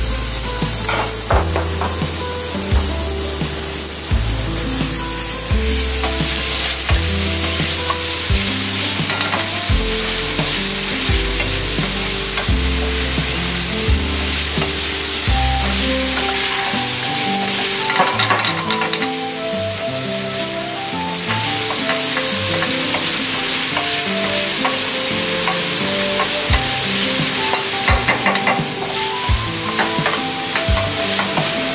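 Diced chicken sizzling in a hot frying pan over a gas flame as it is stirred with a wooden spatula. Background music with a melody and bass line plays over it; the bass drops out about halfway through.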